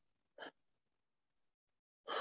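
Near silence, broken about half a second in by one brief, faint breath sound from a person pausing mid-sentence.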